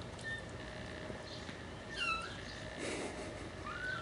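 Faint, high-pitched kitten mews: a short one about two seconds in and a rising one near the end. Soft scuffling comes from the kittens wrestling on the carpeted cat-tree platform.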